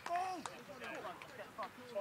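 Rugby players' voices calling out in short shouts across the pitch, with a few faint sharp clicks.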